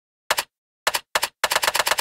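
Computer keyboard typing: a few scattered key clicks, then a quick run of clicks in the last half second.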